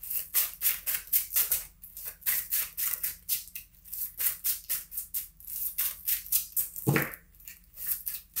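A tarot deck being shuffled by hand: a quick run of short papery card strokes, about five a second.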